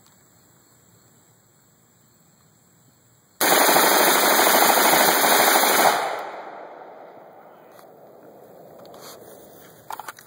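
Ruger SR-556 rifle fired in a rapid string of shots, so fast they run together, starting about three and a half seconds in and lasting about two and a half seconds, then echoing away.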